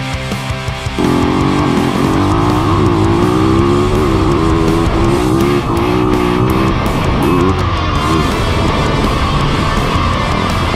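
Rock music with electric guitar. From about a second in, a Yamaha motocross bike's engine is heard under it, its revs repeatedly rising and falling.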